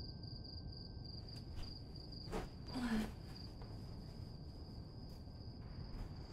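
Crickets chirping in a faint, steady, fast trill.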